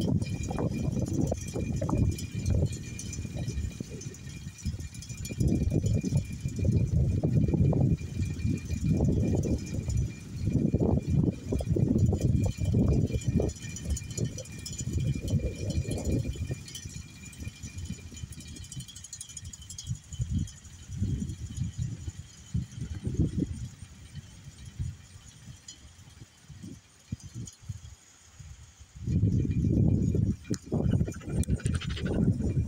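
Wind gusting over the phone's microphone, a rumble that swells and drops: strong through the first half, weaker in the second, picking up again near the end.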